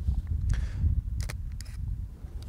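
Low, steady rumble of wind on the microphone outdoors, with a few sharp clicks over it, the first about a quarter-second in and a quick pair past the middle.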